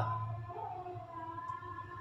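A faint, steady background hum of a few held tones, heard in a short pause between spoken sentences.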